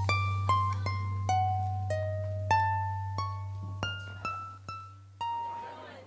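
Concert pedal harp played solo: a slow melody of single plucked notes, each ringing out and dying away, over a held low tone. The low tone fades about five seconds in, and a last note rings on alone.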